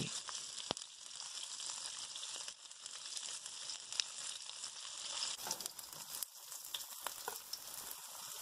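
Shrimp-stuffed tofu cubes frying in shallow oil in a nonstick pan, a steady sizzle as each side is browned golden. A few light clicks from metal tongs turning the cubes.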